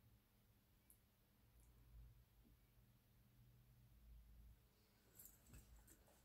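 Near silence: room tone, with a few faint clicks near the end.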